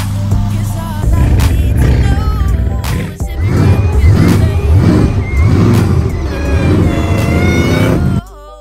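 A car engine revving up and falling back about five times in a row over loud hip hop music.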